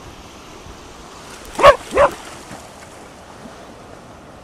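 Cardigan Welsh Corgi barking twice in quick succession, about a second and a half in.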